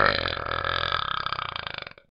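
Talking Ben the dog's long cartoon burp from the Talking Ben app, lasting about two seconds. It is loudest at the start, turns rattly as it fades, and cuts off suddenly near the end.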